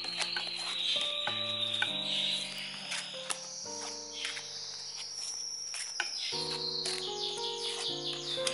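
Soft background music of slow, sustained chords that shift every second or two, over a steady high-pitched chirring. Light clicks of playing-card-sized oracle cards being shuffled by hand come through faintly.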